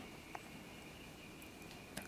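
Near silence: faint workshop room tone with a thin, steady high-pitched hum, and one small click about a third of a second in.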